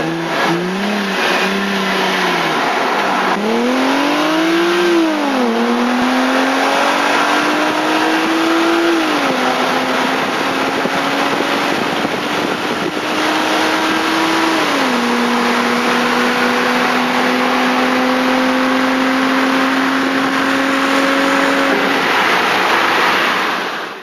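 Audi S4 engine at full-throttle acceleration from a standing start: a few short revs at the launch, then the pitch climbs through the gears, with upshifts about five and a half, nine and fifteen seconds in, before it eases off near the end. Steady wind and road rush run underneath.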